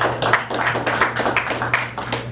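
A microphone on a stand being gripped and repositioned by hand: a run of irregular knocks and rubbing handling noise.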